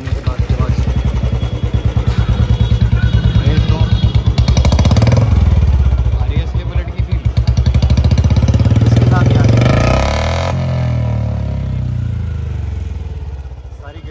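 Royal Enfield Bullet 350's single-cylinder engine running loud through a freshly fitted short 'Mini Punjab' aftermarket silencer, revved up twice and falling back toward idle near the end.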